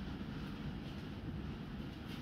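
Steady low rumble of room noise, with a faint soft tap or two.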